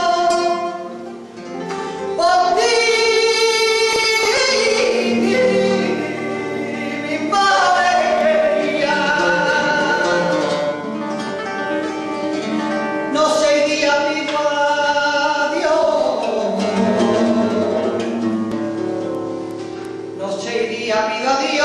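A woman singing flamenco cante in long, wavering, ornamented phrases, accompanied by a flamenco guitar; a new sung phrase starts about two seconds in after a brief dip.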